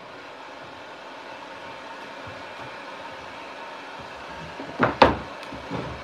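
Handheld electric heat gun blowing steadily as it dries paint on a board. About five seconds in, a couple of sharp knocks of wood on the table.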